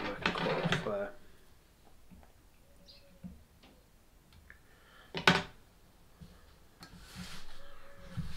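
Small fly-tying scissors trimming at the hook in the vise: a few faint clicks, then one sharp click about five seconds in.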